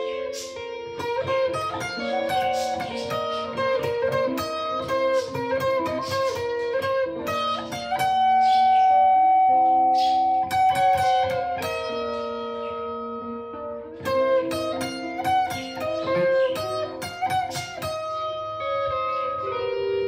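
Electric guitar picked with a small Jazz III pick through a Fender amp, playing a single-note melodic lead over a looped backing of sustained chords. About eight seconds in, one high note is held for around three seconds before the picked run resumes.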